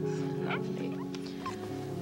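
Soft film-score music holding a sustained chord, with a lower note coming in about a second and a half in. A few faint, short squeaks sound over it.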